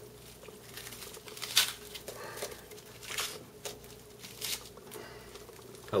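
Hands breaking up food over a crock pot filled with rice and water. There are scattered soft crunches and small splashes as pieces drop into the liquid, over a faint steady hum.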